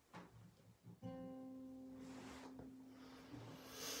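A single guitar note plucked about a second in and left ringing, quietly, to give the starting pitch for a song. A breath is drawn in near the end.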